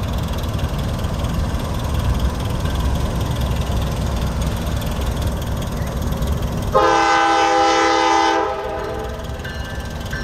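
Air horn of a Norfolk Southern GE Dash 9-40CW diesel locomotive sounding one long blast, a chord of several notes, starting about seven seconds in and lasting under two seconds, as the train approaches a road crossing. A steady low rumble runs underneath.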